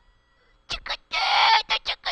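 A person's raspy vocal outburst, broken into short bursts with one longer rough cry in the middle, starting about two-thirds of a second in.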